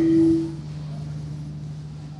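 A single steady electronic tone that cuts off about half a second in, over a low, steady electrical hum.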